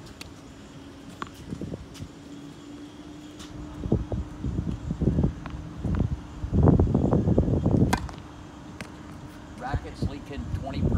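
A tennis ball is bounced on a hard court a few times and then struck with a racket on a serve, a sharp crack about eight seconds in that is the sharpest sound. Before the serve there is a rumbling, muffled noise, over a steady low hum.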